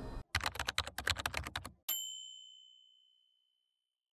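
Typewriter sound effect: a quick run of keystrokes, about ten a second for a second and a half, then a single bell ding that rings out and fades over about a second.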